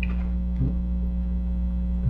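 Steady electrical mains hum: a low, constant buzz with evenly spaced tones.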